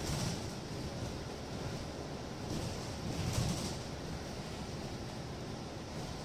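Ride noise heard from the upper deck of a moving double-decker bus: a steady low rumble of engine and road, swelling briefly near the start and again about halfway.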